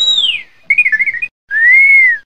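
Three high whistle-like chirps in a row: a short arching glide, then a quick warbling run of notes, then a longer smooth rise-and-fall tone, the loudest of the three.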